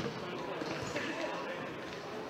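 A futsal ball struck once near the start, a sharp thud, over the indistinct chatter and calls of players and spectators.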